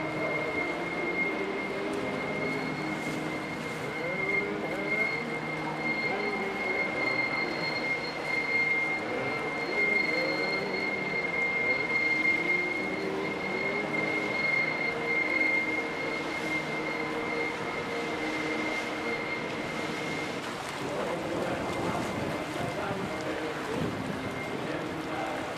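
Ship machinery in a harbour: a steady high-pitched whine over a continuous low rumble, the whine fading out about four-fifths of the way through.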